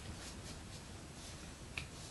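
Quiet room tone with one short, sharp click about three-quarters of the way through.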